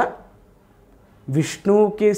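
A man speaking into a close microphone, breaking off for about a second before carrying on.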